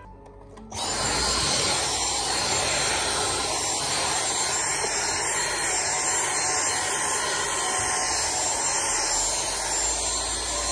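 Vacuum cleaner running steadily, sucking up guinea pig hair and hay from a fabric cage liner; it starts abruptly under a second in.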